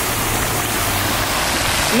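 Fountain water jets splashing into a stone basin: a steady rush of falling water.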